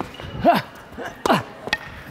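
Tennis rally: sharp pops of racquets striking the ball, with two short sounds that drop in pitch in between.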